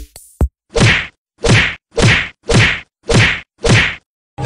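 Comic whack sound effect repeated six times at an even pace, a little under two a second, each hit landing as a blow to a seated man's back.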